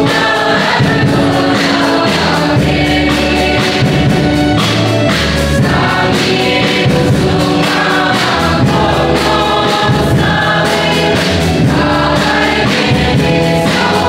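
Mixed choir of women's and men's voices singing a Kokborok gospel song together, over an accompaniment of sustained low bass notes and a steady beat.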